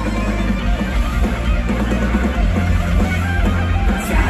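Live rock band playing loudly: distorted electric guitars, bass and drums, heard from within the audience.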